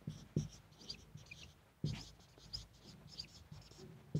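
Marker pen squeaking on a whiteboard in short, quick strokes as letters are written, with a couple of dull knocks of the pen against the board.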